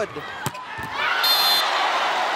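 A sharp hit of a volleyball about half a second in, then arena crowd noise swelling from about a second in, with a brief shrill high tone over it.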